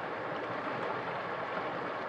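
Steady rushing of flowing water in a cold, running stream.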